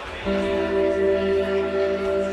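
An amplified instrument on stage comes in about a quarter second in with a sustained chord, held steady without fading, over a low steady hum.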